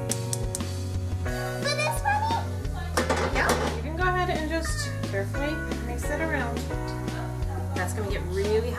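Background music with a steady bass line and a singing voice.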